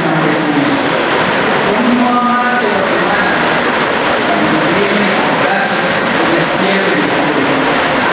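A young man reciting a poem into a microphone in a reverberant hall, his voice half-buried under a loud, steady noise that fills the whole sound.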